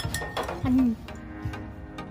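A stirring utensil clicking and scraping against a glass bowl as slime is mixed, over steady background music. A brief voice-like sound is the loudest event, a little over half a second in.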